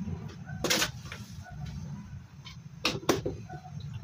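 Sugar being spooned from a plastic jar into a plastic bowl: a few sharp clicks of the spoon against the jar, one about three-quarters of a second in and two close together near the three-second mark, over a low steady hum.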